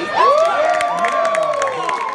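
Wrestling crowd cheering at ringside; several voices rise into long, held shouts just after the start.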